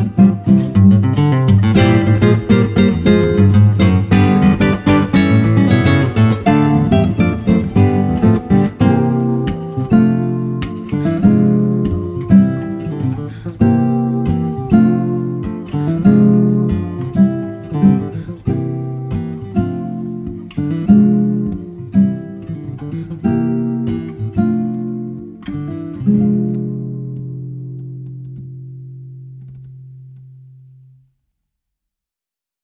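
Two nylon-string classical guitars playing a fingerstyle duo arrangement of a gospel song. The playing is dense at first, thins to spaced chords after about nine seconds, and ends on a final chord that rings out and fades over the last few seconds.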